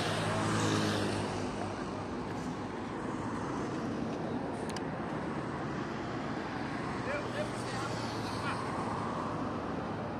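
Steady highway traffic noise, cars and lorries passing, with a vehicle going by loudest in the first second or so. Indistinct voices sound over the traffic.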